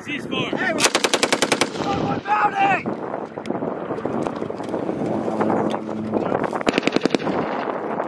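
Belt-fed machine gun firing two bursts: about ten rounds in quick succession about a second in, and a shorter burst near the end.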